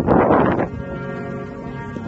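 Brass band playing slow, sustained chords. A loud rush of noise, about a second long, covers the music at the start.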